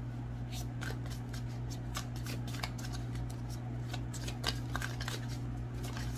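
A deck of tarot cards being shuffled by hand: irregular soft flicks and taps of card edges, over a steady low hum.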